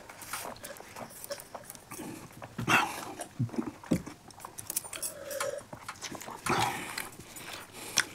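Close-up mouth sounds of people eating biryani with their hands: wet chewing and lip-smacking clicks, with two louder breathy sounds, one near 3 s in and one near 6.5 s in.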